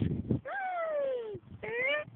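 Baby under six months on a swing, vocalizing happily: one long high call that falls in pitch, then a shorter rising call near the end.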